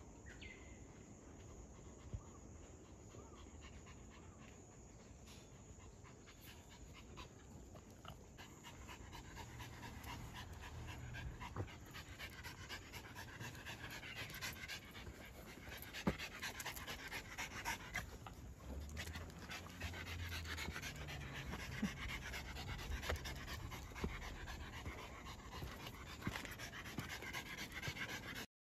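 Cavalier King Charles Spaniel panting, faint at first and growing louder after the first several seconds.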